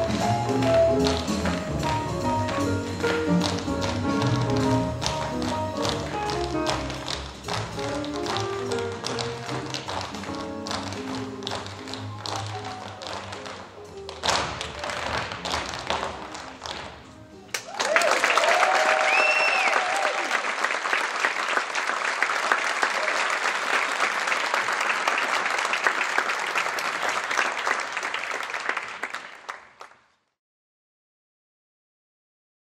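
A group of tap dancers' shoes tapping in unison over recorded music. About seventeen seconds in, the music ends and audience applause with cheers and whoops takes over, then fades out near the end.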